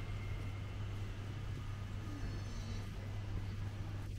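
Street background with a steady low engine hum from a vehicle running close by.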